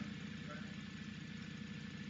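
Room tone: a faint, steady low hum, with no distinct event, in a pause between spoken sentences.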